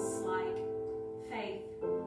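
A slow worship song: a woman singing over sustained chords on an electronic keyboard, the chord changing about every second and a half.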